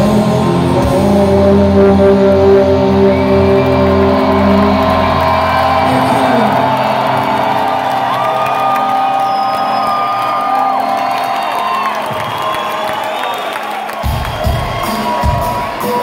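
A live metal band's final sustained chord rings out with heavy bass for about six seconds and then thins away, while a large concert crowd cheers and shouts through to the end.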